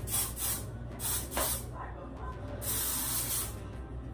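Aerosol spray can being sprayed: several short hissing squirts, then one longer spray of about a second past the middle.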